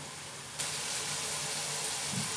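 Chicken and white vinegar sizzling in a wok on a gas burner, a steady hiss that gets louder and brighter about half a second in. The vinegar is being cooked down so its sharp acid steams off.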